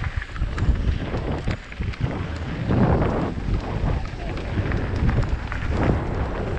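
Mountain bike descending a dirt and gravel trail, heard from a camera on the bike: a steady rumble of tyres and wind on the microphone, with frequent sharp knocks and rattles as the bike runs over rough ground.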